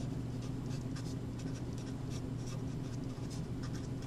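Sharpie felt-tip marker writing on paper: a quick run of short scratchy strokes, over a steady low hum.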